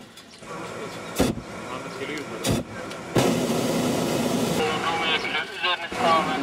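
Hot air balloon propane burner firing: two short blasts about a second apart, then a longer steady blast from about three seconds in. Voices come in over it near the end.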